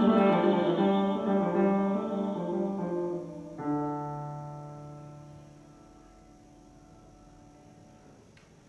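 Grand piano playing the closing bars of a song accompaniment: a run of notes, then a final chord struck at about three and a half seconds that rings on and dies away over the next two seconds.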